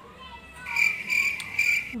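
Cricket chirping: three short bursts of a high, steady pulsing trill.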